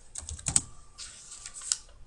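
About half a dozen light, scattered clicks at a computer desk, like keys or mouse buttons being pressed, the sharpest about a quarter of the way in and near the end.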